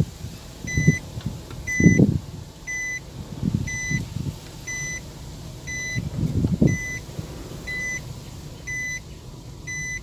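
A car's in-cabin warning beeper sounding a short steady beep about once a second, heard from inside the cabin. Low rumbling swells come under it, loudest about two seconds in and again around six and a half seconds.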